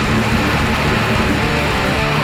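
Distorted electric guitar played through a Line 6 POD X3 Live modeller: a fast, busily picked metal riff, dense and continuous, over the recorded band track.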